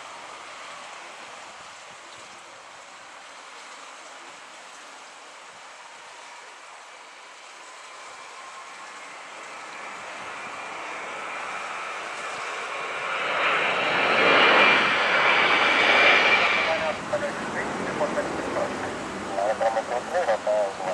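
Twin jet engines of a British Airways Airbus A320-family airliner at takeoff power. The sound grows from a distant rumble to its loudest as the climbing jet passes overhead about two-thirds of the way through, with a steady high whine over the rush, then falls away.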